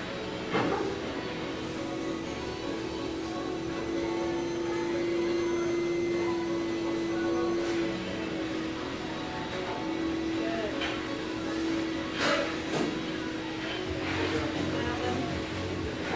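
Gym background: music with a long held tone, faint voices and a steady hum, with a few short knocks.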